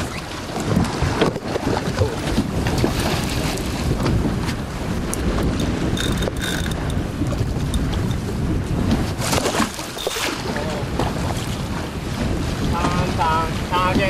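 Wind buffeting the microphone on an open boat at sea, over water lapping against the hull, with scattered knocks. A brief thin whistle-like tone sounds about six seconds in, and short wavering voice-like sounds come near the end.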